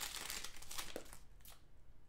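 Foil trading-card pack wrapper crinkling as it is peeled back and the cards are pulled out; the rustling dies down after about a second.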